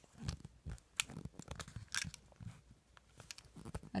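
Paper scratch-off lottery tickets being handled on a metal clipboard: faint, irregular rustles, scrapes and small clicks and taps.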